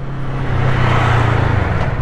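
Yamaha R3 motorcycle's 321 cc parallel-twin engine running on its stock exhaust as the bike rides along, with wind and road noise; the sound grows louder about half a second in and holds.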